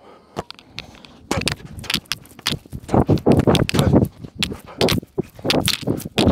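Running footsteps on artificial turf: a quick, irregular series of loud thuds and scuffs that begins about a second in.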